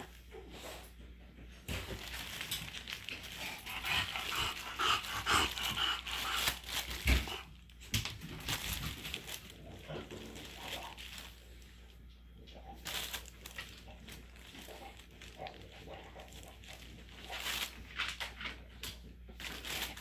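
A dog, with scattered short rustling and knocking noises throughout.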